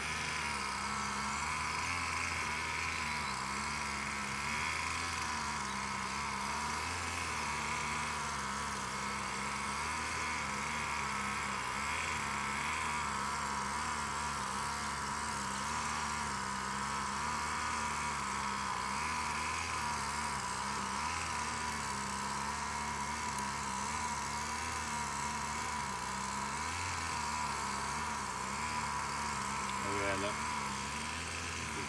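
Honeybees buzzing around an opened hive as its frames are lifted out: a steady hum whose pitch wavers slightly.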